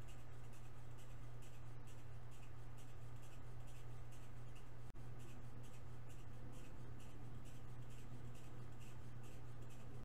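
A steady low hum with faint, irregular scratchy rustling over it. The sound drops out for an instant about five seconds in.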